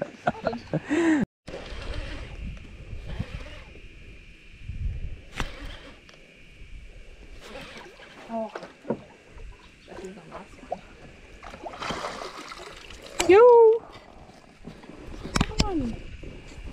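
Water splashing and scattered knocks around a small aluminium boat as a fish is landed in a net, with short untranscribed voices and one loud exclamation about 13 seconds in, over a steady high hum.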